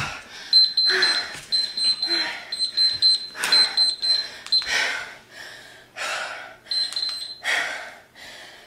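Digital interval timer beeping in rapid high-pitched pulses, grouped about once a second, stopping about five seconds in and sounding again briefly near the end: the signal that the work interval is over. Heavy, hard breaths from exertion run under it.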